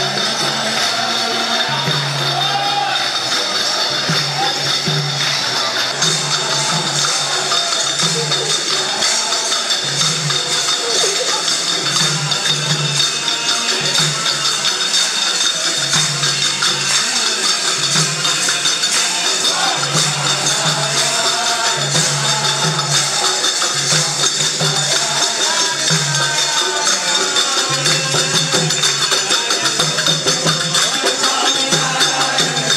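Devotional procession music: a barrel hand drum beating a steady pulse about once a second, with small hand cymbals jingling continuously and a group of voices singing a bhajan.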